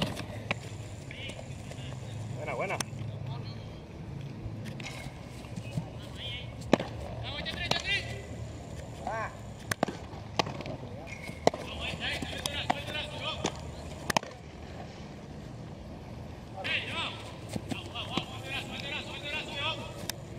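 Baseball fielding practice in an open ballpark: a few sharp knocks, spaced seconds apart, as balls are struck and caught, over distant voices calling across the field.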